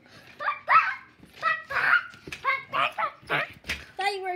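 A young girl imitating a chicken: a run of short clucking calls, about two a second.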